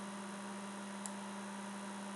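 Steady low electrical hum with background hiss, the noise floor of the recording, with one faint click about a second in.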